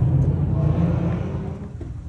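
A vehicle engine running nearby with a steady low hum that fades away near the end.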